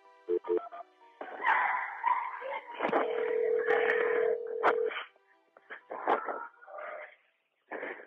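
A phone call being placed over a telephone line, with short dialing sounds followed by a steady ringback tone of about two seconds, over the muffled, narrow-band noise of a 911 call recording. A voice answers just at the end.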